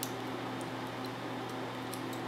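A few faint clicks from a cheap plastic combination luggage padlock being handled, its dial wheels and case ticking, over a steady low electrical hum.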